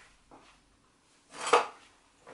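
A short, noisy scrape or rustle about one and a half seconds in, from kitchen things being handled on the counter while flour is fetched for the mask mix. A fainter, similar sound comes just after the start.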